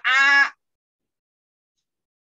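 A person's voice sounding one drawn-out 'ah' vowel for about half a second, on a steady pitch. It is the letter-sound 'A' read aloud in a Quran letter-reading drill.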